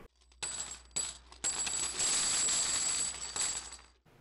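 Logo sound effect of coins: a few separate metallic clinks, then a longer run of jingling coins with a high ringing shimmer that fades out near the end.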